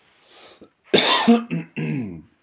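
A man coughs: a faint breath in, then one loud cough about a second in, followed by two shorter throaty sounds like clearing his throat.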